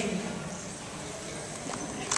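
Low room noise of a large hall in a pause between spoken lines, with a faint tap late on. The end of a child's spoken line trails off at the start.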